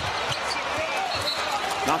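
Basketball bouncing on a hardwood court during live play, over the steady noise of an arena crowd.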